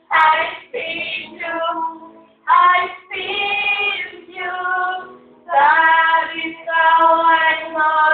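A high voice singing a melody in short phrases with brief gaps between them, over quieter held notes.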